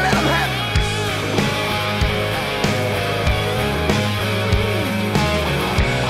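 A country-rock band plays an instrumental break with no vocals. An electric guitar lead plays bent, gliding notes over a steady drum beat and a sustained bass line.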